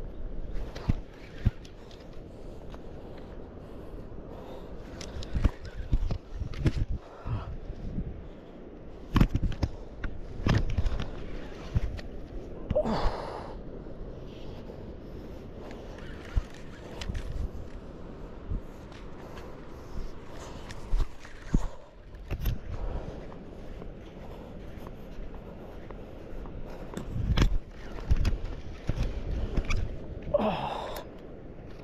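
Irregular knocks, rubs and scrapes of handling on a rod-mounted camera as a spinning reel is cranked against a hooked bat ray, over a steady background hiss.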